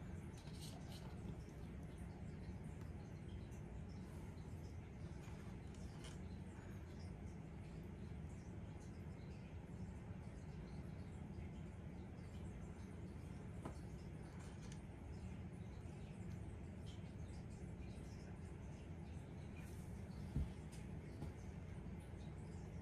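Quiet room tone: a steady low hum with a few faint small clicks and taps, and one soft thump near the end.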